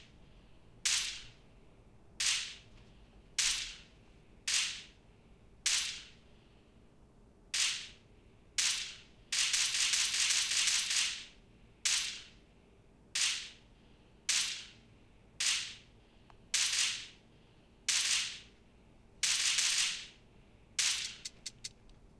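Wind from a standing fan on its highest setting blowing on a Samsung Galaxy Buds 2 earbud microphone, heard through the earbud mic. The wind comes through as short, sudden, hissy bursts about once a second, two of them lasting a second or more, and is cut to a faint background in between as the mic filters it out.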